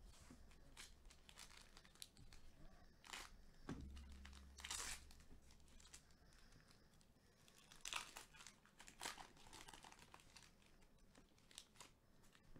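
Foil wrapper of a Panini Prizm Basketball hobby pack being torn open and crinkled by hand: a run of faint, irregular crackles and rips, loudest about five and eight seconds in.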